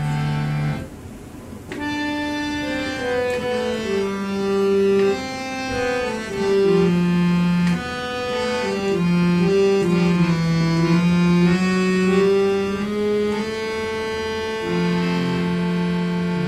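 Double-reed portable harmonium, bellows pumped by hand, playing a slow melody of held reedy notes. A short note sounds at the start, then after a pause of about a second the playing runs on without a break.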